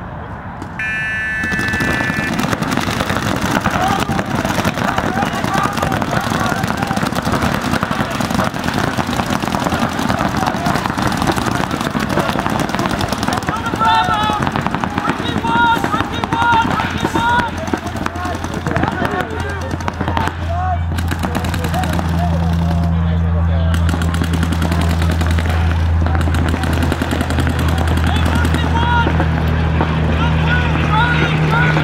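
A short start tone sounds about a second in. Then several paintball markers fire in fast, overlapping strings of shots while players shout. A steady low hum joins in the second half.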